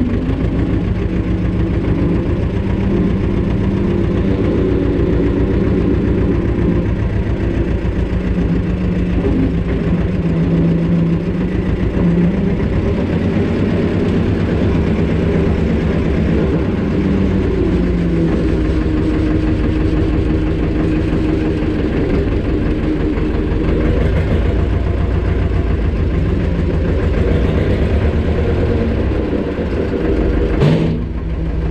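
Tractor's diesel engine running, heard from inside the cab as the tractor is driven, its note shifting in pitch a couple of times partway through.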